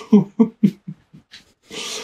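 A man's voice makes a few short, clipped sounds in the first second, not clear words. Near the end comes a breathy burst, a short laugh or sharp breath.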